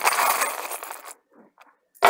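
A handful of small metal charms and pins jingling together in the hand. The jingle fades out about a second in and is followed by a brief lull, with sharp clinks as they start to hit the table right at the end.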